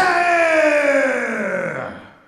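Ring announcer's voice holding out the end of a fighter's name in one long call, its pitch slowly falling as it fades out near the end.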